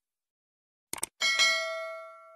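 Subscribe-button sound effect: two quick mouse clicks a little before a second in, then a bright bell ding that rings on and slowly fades.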